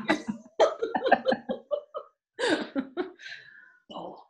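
Women laughing in short, repeated bursts.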